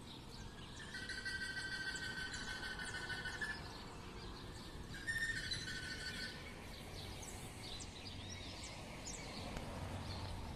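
Birds calling: a long, buzzy trilled call about a second in and another about five seconds in, then many short high chirps.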